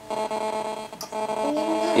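A steady buzzing tone with several pitches held together, and a fainter note rising in the second half.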